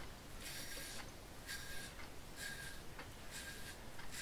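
Double-edge safety razor (Phoenix Artisan Accoutrements DOC with a Personna Red blade) scraping through stubble on a lathered scalp: four short, faint strokes about one a second.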